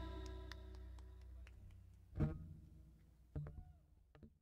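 A rock band's last chord ringing out on guitar and amplifier, slowly fading away. Two short voice-like calls cut in about two and three and a half seconds in.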